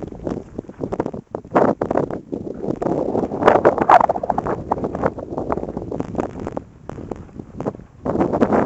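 Wind gusting over the camera microphone, an uneven rumbling noise that rises and falls in irregular buffets.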